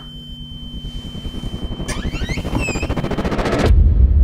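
Trailer sound design building tension: a steady high whine over low pulses that speed up and grow louder. It cuts off abruptly shortly before the end into a deep low rumble.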